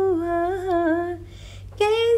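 A woman humming a held note that slides gently downward and breaks off just after a second in, with a new note starting near the end. The voice is unaccompanied.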